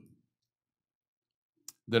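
A pause in a man's speech: near silence, broken once near the end by a single short click just before he speaks again.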